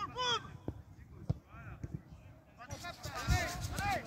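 High-pitched children's voices calling out on a football pitch, with two sharp thuds of a football being kicked in between.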